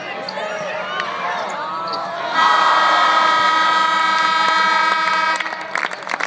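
Arena game-end buzzer sounding one steady blast for about three seconds, starting a couple of seconds in and cutting off sharply; before it, voices shouting across the court.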